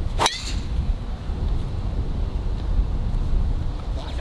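A golf driver striking a ball off the tee: one sharp, ringing crack about a quarter second in. After it comes a steady low rumble of wind on the microphone.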